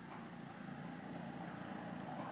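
Faint, steady low rumble of a distant motor vehicle engine.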